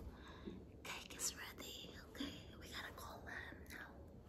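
A woman whispering in short, breathy bursts.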